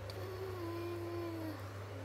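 A woman humming one short closed-mouth note of about a second, dipping slightly in pitch and then held, over a steady low background hum.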